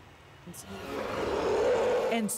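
A monster's roar from a horror film: a rasping growl that starts about half a second in and swells steadily louder.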